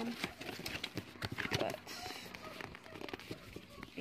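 Cardboard product boxes being shuffled and lifted out of a larger cardboard box: scattered light knocks, scrapes and rustling of card against card.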